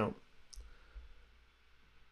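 A single faint mouse click about half a second in, followed by quiet room tone.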